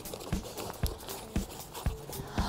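Four soft knocks, evenly spaced about two a second.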